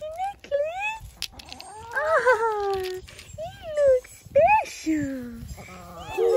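A dog whining in a string of high, rising-and-falling cries, about one a second.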